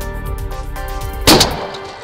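Background music with a steady beat, broken about a second and a quarter in by a single loud shotgun shot at a turkey; the music cuts off just after the shot.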